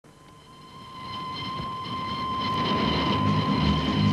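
Steam train growing steadily louder as it approaches, with a steady high tone held throughout and a rhythmic low chugging that builds from about halfway.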